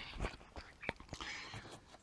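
A few faint, light clicks and knocks scattered over a quiet background.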